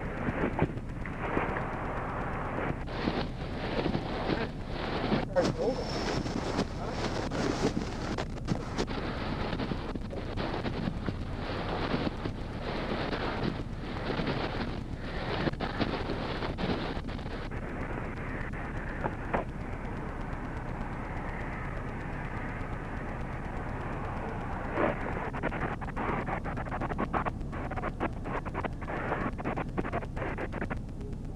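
Wind buffeting an outdoor microphone: a rough, gusty rumble with frequent crackles, busier for the first half and duller after.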